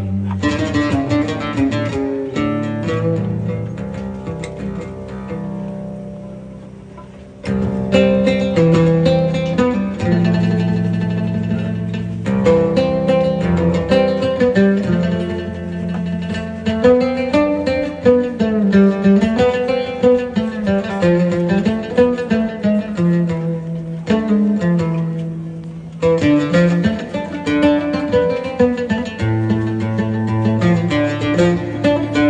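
An oud and an upright double bass playing a tune live: a plucked oud melody over low bass notes. The playing fades about six seconds in and comes back strongly at about seven and a half seconds.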